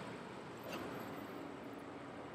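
Quiet, steady background hiss of open-air ambience, with a faint brief tick about two-thirds of a second in.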